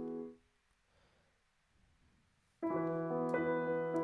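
Addictive Keys Studio Grand virtual grand piano: a sustained chord stops abruptly about half a second in. After a near-silent gap of about two seconds, a new chord sounds through a different virtual microphone setup that makes it more echoey.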